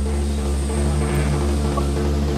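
Rock band music: a steady, droning instrumental passage of sustained guitar and bass tones over a low hum, with no vocals.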